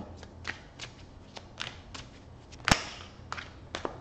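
Tarot cards being shuffled by hand: a scattering of short card flicks, with one sharp snap about two-thirds of the way through.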